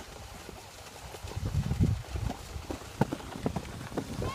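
Skis sliding and scraping over groomed snow, with irregular low thumps and a few sharp clicks about three seconds in.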